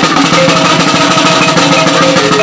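Kulintang gong ensemble playing: a fast run of tuned gong notes, each ringing briefly before the next, over a dense beat of drum and gong strokes.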